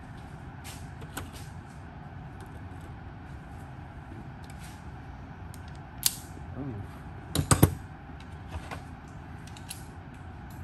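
Hand tools and sockets being handled, with scattered light metallic clicks, a sharp click about six seconds in and a short loud clatter of knocks about a second later, over a steady low background hum.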